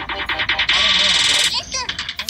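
Voices over music, with a loud, high-pitched burst from a little under a second in that lasts about a second.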